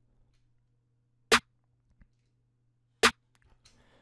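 The first layer of a layered trap snare, a drum-machine snare sample played solo, hitting twice about 1.7 s apart. This layer has had some of its treble cut, leaving the bright top to a second snare layer.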